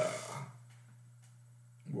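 A man's voice saying a drawn-out 'uh', then a pause of about a second and a half with only a steady low hum, before he starts speaking again near the end.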